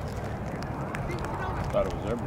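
Distant voices of players calling across an open field over steady low background noise, with one short call near the end.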